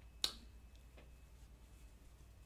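A small folded sheet of paper handled in the fingers: one sharp click shortly after the start and a faint tick about a second in, otherwise faint.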